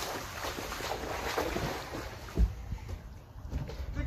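Wind buffeting the microphone over splashing and sloshing of meltwater on a soft, slushy outdoor ice rink, fading in the second half, with a low thump a little over two seconds in.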